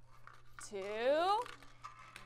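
A woman's voice counting aloud, saying "two" with its pitch rising through the word. Faint light ticks come before and after the word.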